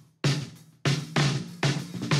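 Recorded snare drum, picked up by one mic on top and one underneath, played back as a run of sharp hits that ring out briefly. The hits come about 0.6 s apart at first, then quicker. It is heard in a comparison of input delay on the bottom mic, used to shape the snare's low end.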